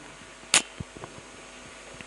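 Handling noise close to a handheld microphone: one short, sharp crackle about half a second in, then a couple of soft knocks, over a faint steady hum.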